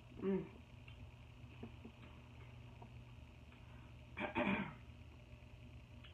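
Someone eating: a brief 'mm' of enjoyment at the start, then faint chewing and small mouth clicks, and a short throaty mouth sound about four seconds in.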